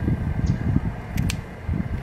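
Outdoor background noise: a low, uneven rumble with a faint steady whine, and a few brief ticks a little past halfway through.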